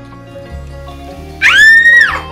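Background music, then about one and a half seconds in a child's loud, high-pitched squeal of delight that rises, holds briefly and falls away, as the vinegar makes the baking soda foam over.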